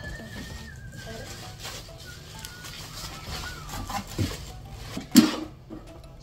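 Handling noises as a small air fryer is unboxed, with a sharp knock about five seconds in. A faint thin high tone slides slowly down in pitch through the first half.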